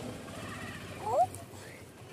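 A child's brief rising vocal sound about a second in, short and high-pitched.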